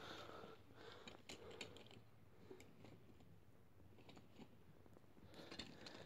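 Near silence, broken by faint, scattered clicks and rustles of small objects being handled.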